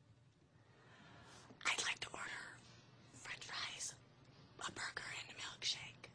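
A woman whispering three short phrases, breathy and unvoiced, with short pauses between them.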